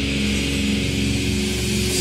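Heavy metal band music: distorted electric guitars and bass holding steady, sustained notes over drums and cymbals.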